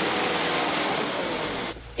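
Compact track loader's engine running loud and steady close up, cutting off suddenly near the end.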